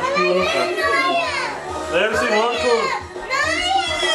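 Young children's voices, high-pitched excited shouting and squealing in repeated rising-and-falling phrases.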